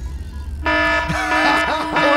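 Lie-detector game's verdict sound effect: a low suspense drone gives way, a little over half a second in, to a sudden, held horn-like chord.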